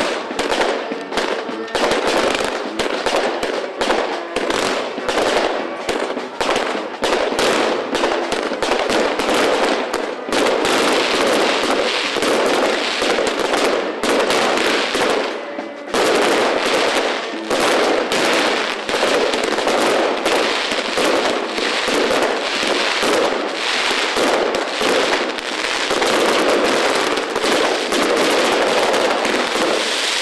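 Fireworks crackling densely and almost without a break, a rapid run of cracks and pops, with a short lull about halfway through.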